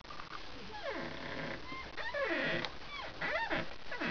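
Domestic cat meowing, several short calls that slide steeply in pitch.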